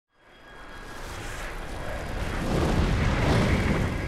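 Cartoon sound effect of a spaceship rushing through space: a deep rumbling rush of noise that swells for about three and a half seconds, loudest near the end, then starts to die away.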